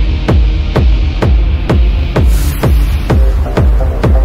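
Techno track in a DJ mix: a steady four-on-the-floor kick drum at about two beats a second over deep bass. A burst of high hiss sweeps in about halfway through, and a short repeating synth riff enters near the end.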